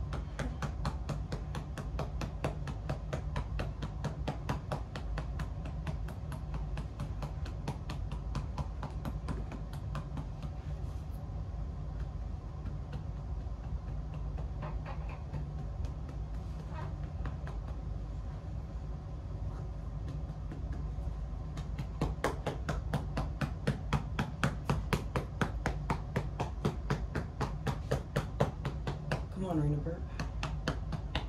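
Rapid, even patting on a newborn baby's back to bring up a burp, about five pats a second, growing louder about two-thirds of the way in. A low steady hum underneath.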